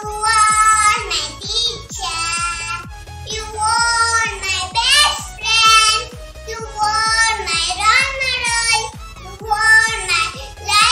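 A young girl singing a song in phrases over a backing track with a steady beat.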